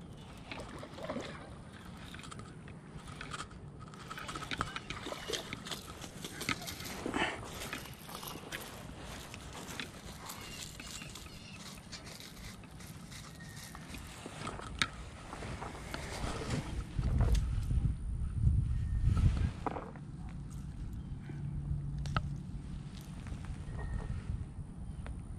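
Scattered clicks and handling noise from a fishing rod and baitcasting reel being worked by hand, with a louder low rumble about two-thirds of the way through.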